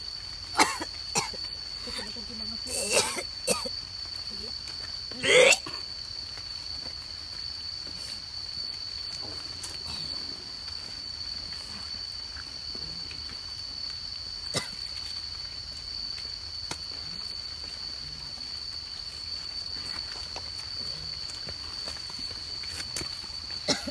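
A person coughing and clearing the throat a few times in the first six seconds, ending in a louder strained vocal sound about five seconds in, then only a steady high-pitched tone with a single click near the middle.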